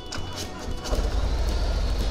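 2018 Harley-Davidson CVO Road Glide's 117 cubic inch V-twin starting about a second in and settling into a low, pulsing idle.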